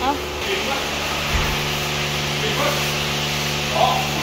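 A steady mechanical hum made of several fixed tones, with a single low thump about a second and a half in.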